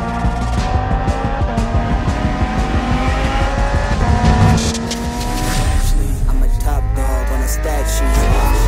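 Lamborghini Huracán Tecnica's naturally aspirated V10 engine revving, climbing in pitch through several long pulls with breaks between them, over background music.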